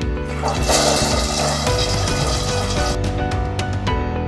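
A toilet flushing, a rush of water from about half a second in that dies away after about three seconds, heard under steady background music.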